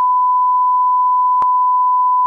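Steady 1 kHz reference tone (line-up tone) playing with colour bars at the head of a tape, one unwavering pure pitch. A faint click comes partway through.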